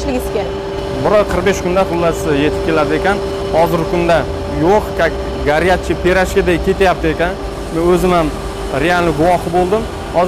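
A man speaking, over a steady hum and low rumble.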